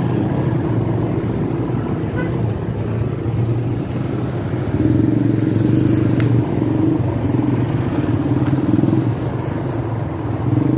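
Small motorcycle engine running at low road speed, a steady, slightly wavering note that gets louder about five seconds in as the throttle opens.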